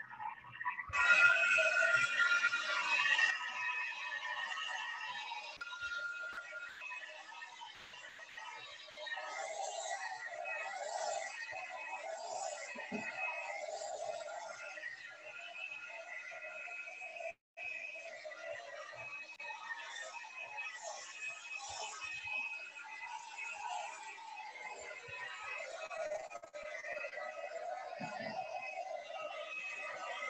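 Handheld hair dryer running steadily with a whine, blowing onto a wet watercolour painting to spatter the water for texture effects. It is loudest for a couple of seconds near the start.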